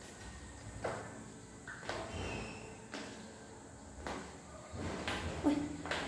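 Footsteps going down a stairwell, one step about every second.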